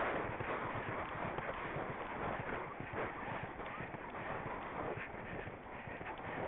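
A horse's hooves striking turf at speed in quick, uneven beats, with wind rushing over the helmet-camera microphone, strongest in the first second.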